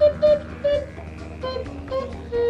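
Ocarina played in short single notes: two louder notes in the first half-second, then a few softer, shorter ones.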